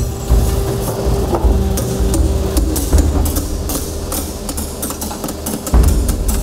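Brass gong turning on a lathe while a hand-held cutting tool shaves its rim: a steady machine hum with irregular sharp scraping ticks.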